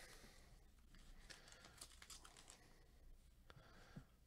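Near silence with faint, scattered light clicks and rustling of trading cards being slid out of a pack and thumbed through by gloved fingers.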